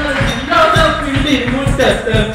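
Ottan Thullal verse chanted in a sustained, gliding voice over hand-drum strokes, about four or five thumps a second.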